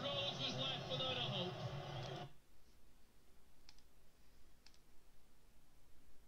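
Voices that cut off abruptly a little over two seconds in, leaving a low hush broken by a few faint clicks.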